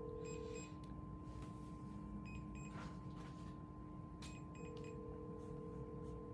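Faint ringback tone of an outgoing cell phone call: a low steady tone that stops about half a second in and comes back about four seconds later for about two seconds, over fainter constant electronic tones.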